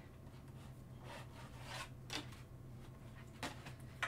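A few soft scrapes and rubs as a Stampin' Cut & Emboss die-cutting machine is pulled across a counter, over a steady low hum.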